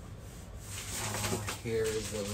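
Plastic packaging crinkling and rustling as a wrapped accessory is handled, with a man's brief wordless vocal sound near the end.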